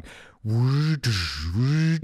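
A man's vocal sound effect acting out a boat riding over a wave and dropping: a breathy rush, then a long drawn-out voice sound in two parts whose pitch dips and rises again.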